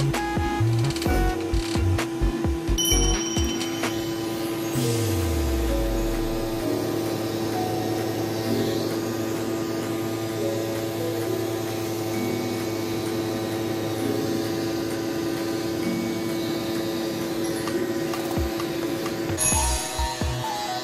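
A cordless pet grooming clipper runs with a steady electric buzz while cutting through matted belly fur on a long-haired cat. Light background music plays with it.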